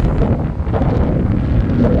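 Wind buffeting the microphone, a loud, steady low rumble.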